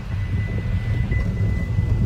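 Low steady rumble of engine and road noise inside a moving car's cabin, with a thin steady high-pitched whine over it.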